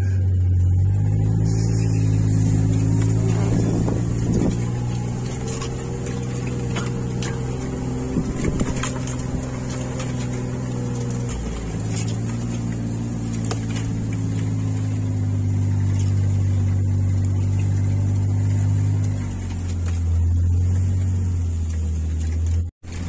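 A side-by-side utility vehicle's engine running at low speed. Its pitch steps up about a second in, dips briefly around the middle, and settles lower again near the end.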